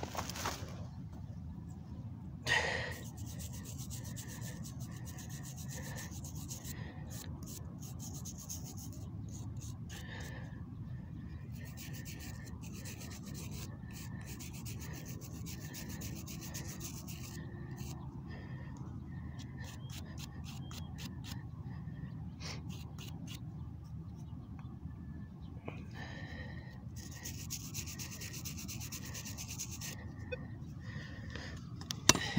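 Fingers rubbing caked soil off a small, heavily worn one-centavo monograma coin to clean it: many short, scratchy strokes over a low steady background, with one louder knock about two and a half seconds in.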